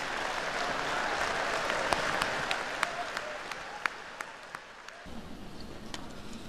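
Audience applause that thins out into a few scattered individual claps, then cuts off abruptly about five seconds in.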